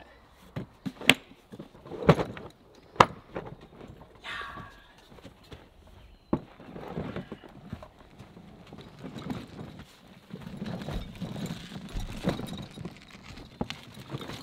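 Milwaukee Packout plastic tool cases being stacked and latched together, giving three sharp clacks in the first few seconds. From about six seconds in, the loaded rolling toolbox rattles and rumbles on its wheels as it is pulled over the ground.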